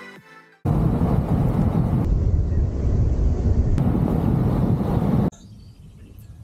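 Electronic intro music fading out, then after a short gap a loud, steady rumbling noise, strongest in the low end, that lasts about four and a half seconds and cuts off suddenly.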